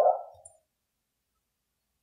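Near silence: the tail of a spoken word fades out in the first half second, then dead silence.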